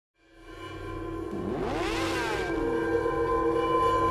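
Logo intro soundtrack: a steady music drone fading in, with a sound effect that glides up and then down in pitch about two seconds in.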